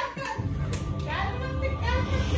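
Background music with a steady low bass, mixed with voices talking in the room.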